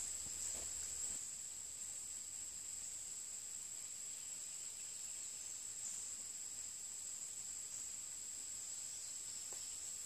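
Steady, high-pitched chorus of insects, unbroken throughout.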